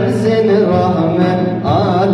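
Male voice singing a drawn-out, wavering melismatic line of a Turkish ilahi, with frame drums struck about once a second over a steady low backing tone.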